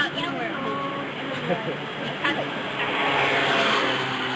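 Several people talking indistinctly around a street scene, with road traffic noise rising toward the end and two short sharp knocks around the middle.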